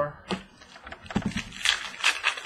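Baseball trading cards being flipped, stacked and slid on a tabletop by hand: a quick run of light clicks and short swishes, busier in the second half.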